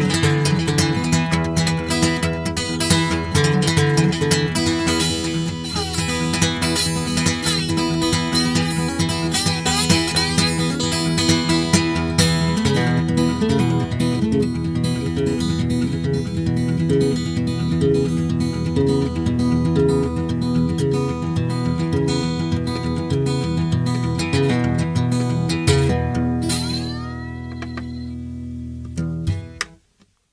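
Acoustic guitar playing a blues instrumental outro, picked melody over steady repeated bass notes, with a few bent notes. It drops in level near the end, the last notes ring out and then cut off suddenly.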